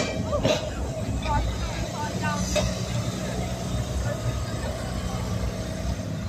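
Vintage Blackpool Balloon double-deck electric tram rolling slowly into a stop along street track, a steady low rumble under voices in the first couple of seconds.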